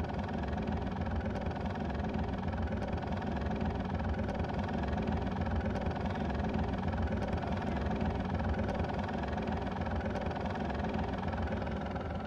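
Multirotor drone's motors and propellers humming steadily as it hovers.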